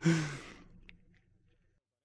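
A man's single breathy sigh as his laughter winds down, with a little voice in it, fading out within about half a second.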